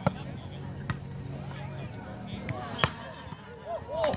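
A volleyball struck by hand three times: a serve right at the start, then two more hits about one and three seconds in, each a sharp slap. Players' voices call out near the end.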